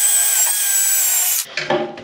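Cordless drill spinning a wire wheel brush against a metal housing face, scrubbing off dirt and old grime: a steady high whine over a rasping scrub that cuts off suddenly about one and a half seconds in.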